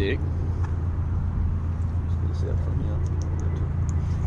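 Steady low hum of a boat motor running, unchanging throughout.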